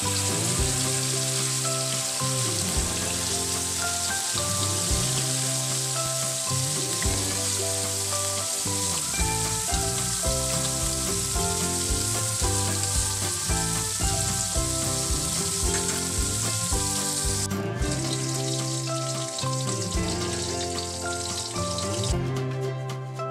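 Dilis (small anchovies) frying in a pan of hot oil: a steady, loud sizzle that stops abruptly about three-quarters of the way through. Background music plays throughout.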